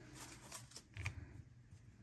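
Tarot cards being handled: faint taps and rustles of cards, with a soft low knock about halfway through.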